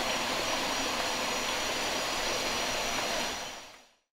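Steady outdoor background ambience: an even hiss with a thin, high, steady tone running through it, fading out near the end.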